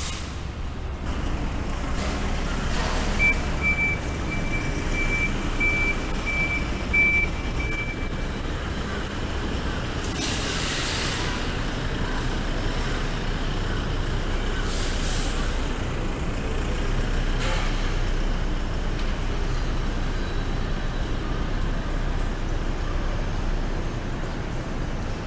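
Street traffic noise with a truck's engine rumbling steadily. A few seconds in, a reversing alarm beeps a single high note about twice a second for around five seconds. About ten seconds in comes a short hiss of air, like a truck's air brake releasing.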